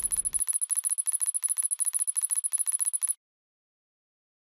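Text-reveal sound effect: a fast, even run of sharp ticks, about a dozen a second, with a high bell-like ringing tone over them, cutting off suddenly about three seconds in.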